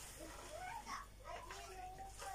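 Faint speech in the background, its pitch rising and falling.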